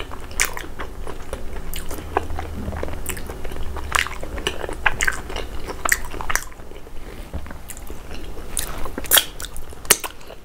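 Close-miked chewing of fufu and peanut soup, with wet mouth sounds and irregular sharp lip smacks. A few louder smacks come near the end.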